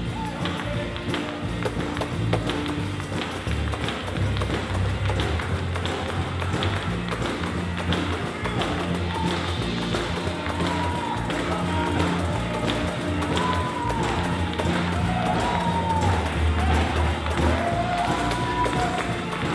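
Live gospel praise music: a bass line under steady percussion, with a hand-held tambourine struck and shaken. Voices rise over it in the second half.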